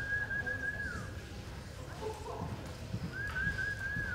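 Two long, wavering human whistles, each about a second long: a spectator whistling encouragement to a reining run, one at the start and one near the end. Under them, soft thuds of the horse's hooves in the arena dirt.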